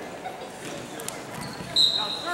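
Wrestlers thudding onto a gym mat during a takedown, under the chatter of voices in a large gym. Near the end comes a sudden, loud, steady high whistle blast, the loudest sound, typical of a referee's whistle.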